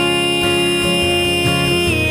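Acoustic ballad: a voice holds one long steady sung note over strummed acoustic guitar.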